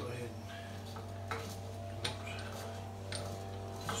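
A handful of light metal clicks, about five spread across a few seconds, as a washer and pinion nut are fitted by hand onto the pinion flange of a Dana 60 differential, over a steady background hum.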